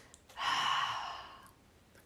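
A person's long, breathy sigh, starting about a third of a second in and fading out over about a second.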